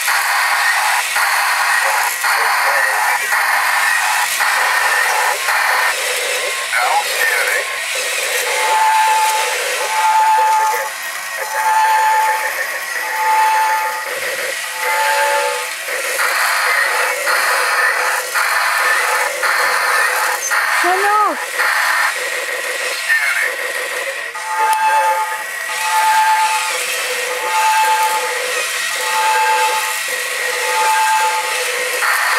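Small battery-powered toy fighting robots whirring continuously as they move and punch, with clicks from the mechanisms and electronic toy sounds: a run of short beeps about every second and a half near the middle and again near the end.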